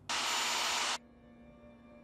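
A sudden burst of loud hissing noise, about a second long, that starts and stops abruptly. It is followed by a steady low hum with faint sustained tones.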